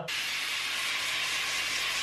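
Aerosol can of Mr Muscle oven cleaner spraying in one steady hiss that starts and stops sharply.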